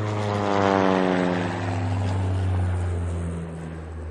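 Small propeller airplane flying past, its engine drone sliding down in pitch as it goes by.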